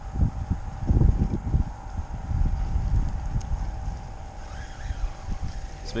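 Wind buffeting the camera microphone as an uneven low rumble that gusts up about a second in.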